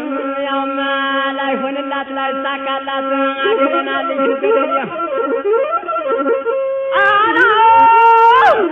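Traditional Amhara chanted music with long, drawn-out held notes. A low sustained note carries the first few seconds while a higher line wavers and bends above it. About seven seconds in, a louder, higher held note with sharp ornaments takes over.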